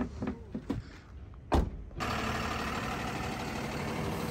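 A few light knocks, then a heavy truck cab door shutting with a single sharp thud about one and a half seconds in. From about two seconds a Tata Prima 5530 tractor unit's diesel engine idles steadily.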